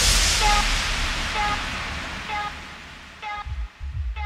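Electronic dance music breakdown in a DJ mix: after the beat drops out, a white-noise sweep fades away and grows duller, while a short synth note repeats about once a second. A thumping kick and bass come back near the end.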